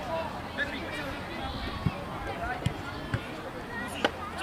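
Faint, distant voices of young players calling out across a football pitch, with three short, sharp knocks in the second half.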